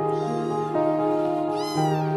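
Young kitten meowing: a faint high meow just after the start and a louder, rise-and-fall meow near the end, over steady background music.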